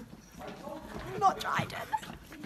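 Muffled, indistinct voices that start about half a second in, with some light knocks mixed in.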